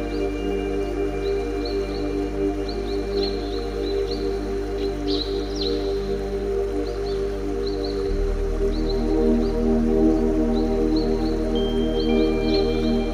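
New-age meditation music tuned to the 396 Hz solfeggio frequency: a sustained synth drone of layered chords over a low bass tone. The low tones shift about eight seconds in. Short, high chirping sounds are scattered over the drone.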